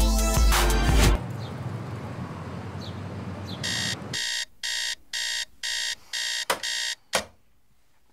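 Background music cuts off about a second in. After a short stretch of noise, a digital alarm clock beeps about twice a second for some three seconds. The beeping stops near the end, when it is hit with two sharp knocks.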